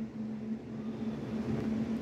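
A steady low hum with a faint hiss of background noise.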